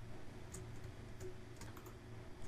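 A few faint, sharp clicks of a computer mouse and keyboard, made as anchor points are clicked with the mouse while the Shift key is held, over a low steady hum.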